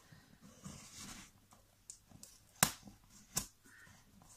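Cardboard parcel being handled and worked open by hand: quiet scraping and rustling, with two sharp clicks in the second half.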